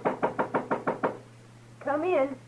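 Quick knocking on a wooden door, about seven raps in a second. A short call in a voice follows near the end.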